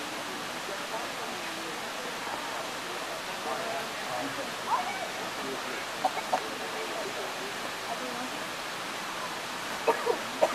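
Indistinct chatter of people over a steady background hiss, with a few short, louder voice-like sounds about halfway through and near the end.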